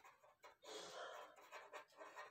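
Near silence: a pen scratching faintly on paper as a word is handwritten, with a soft, breath-like hiss lasting under a second about half a second in.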